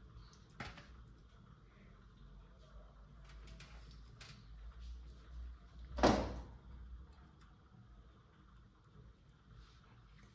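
A plastic tub being handled: quiet knocks and rustles, the loudest a single sharp knock about six seconds in, over a low steady hum.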